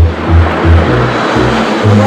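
Upbeat show-intro music with a pulsing bass line, mixed with the rushing noise of a passing car that swells and then fades.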